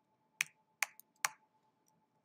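Three keystrokes on a computer keyboard, about 0.4 s apart, as a short word is typed into code.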